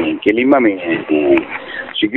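Speech only: a man talking in Sinhala over a telephone line, with the thin, narrow sound of a recorded phone call.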